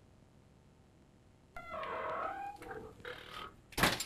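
A door creaks as it swings, then shuts with a loud thunk just before the end.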